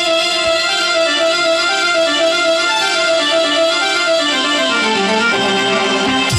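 Instrumental background music: a melody of held, ringing notes, with a falling run of notes near the end.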